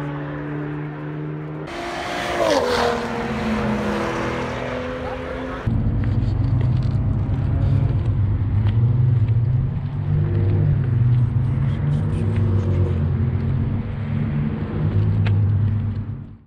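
Car engines: a car passes with its engine note falling in pitch about two seconds in, then a louder engine runs close by with its pitch wavering.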